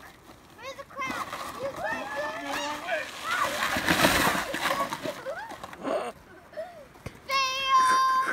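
Plastic sled sliding over icy, crusted snow: a scraping hiss that swells for about two seconds in the middle and then fades, mixed with children's excited voices and a high-pitched child's squeal near the end.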